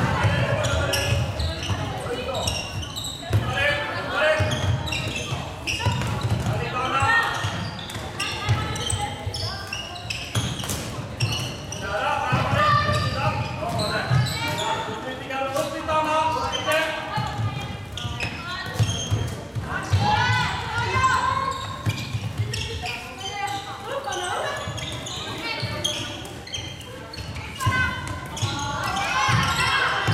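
Floorball match play in a large echoing sports hall: players' shouted calls and voices throughout, with scattered sharp knocks of sticks and the plastic ball.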